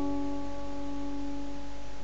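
Acoustic guitar with a capo letting a single plucked G-shape chord ring out, its notes sustaining and slowly fading, the higher ones dying away first.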